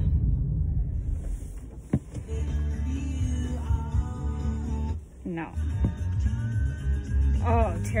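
A sharp click, then music from the car radio starting about two seconds in and playing on.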